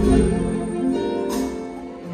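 Live music played by performers on stage, heard from the audience of a large hall.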